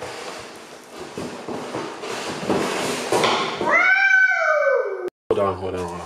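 Cardboard box and packing rustling as a toddler opens it, then a small child's long, loud squeal about four seconds in that rises briefly and then slides down in pitch, cut off abruptly.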